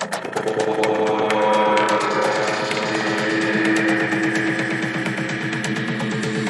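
Tech house DJ mix in a breakdown: the kick drum and bass have dropped out, leaving sustained synth chords over fast, steady percussion ticks.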